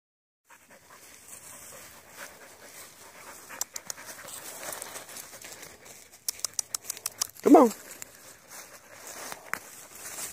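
Dry fallen leaves rustling and crunching as two dogs move about in them and one rolls on its back, with a quick run of sharp crackles or clicks about six to seven seconds in.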